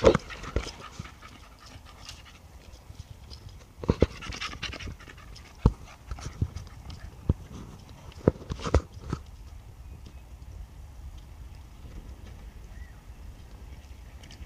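Staffordshire bull terrier panting in bursts, with a few sharp knocks between them; quieter over the last few seconds.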